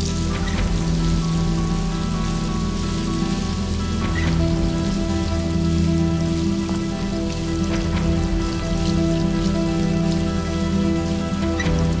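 Water spraying from a garden hose onto a gravel yard, a steady hiss, under background music with long held notes.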